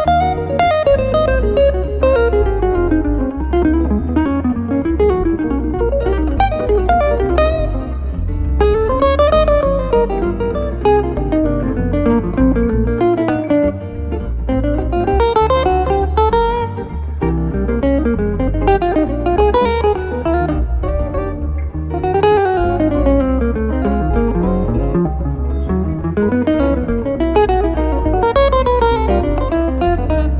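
Live jazz guitar duo: a hollow-body archtop electric guitar and a solid-body electric guitar. One plays fast single-note runs that repeatedly climb and fall, over steady low notes underneath.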